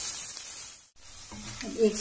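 Diced potatoes and onions with turmeric sizzling in hot oil in an iron kadai as they are stirred with a wooden spatula. The sizzle cuts off suddenly just before a second in, and speech follows.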